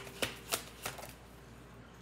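A deck of reading cards being shuffled by hand: four quick card snaps in the first second, then a faint rustle of the cards.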